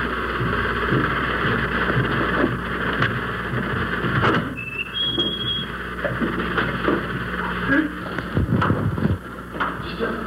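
Steady low electrical hum and hiss, with scattered short knocks and a brief high tone a little before the middle.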